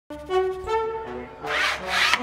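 A knife blade scraping along a straightedge as it cuts through a sheet of board, heard as a loud rasp in the last half second or so. Under it, background music of slow held notes.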